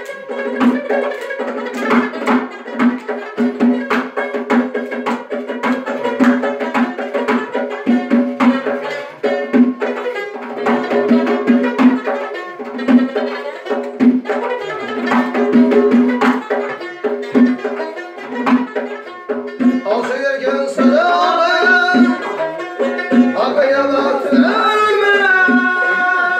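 Live folk music: a long-necked lute strummed in a steady, driving rhythm over a low drone, with frame drum beats. A voice starts singing near the end.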